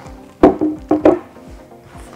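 Background music with a steady beat, over which a white waxwood bo staff knocks three or four times against the table or box, sharp and loud, about half a second to one second in, as it is set down.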